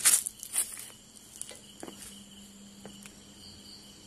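Night insects, crickets among them, chirring steadily in high thin tones. Two short rustling noises come in the first second.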